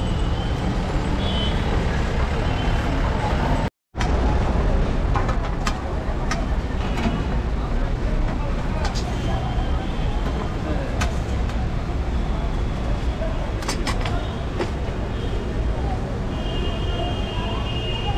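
Busy street ambience at a food stall: steady traffic noise with background voices and occasional sharp metal clinks from utensils. The sound drops out for a moment about four seconds in.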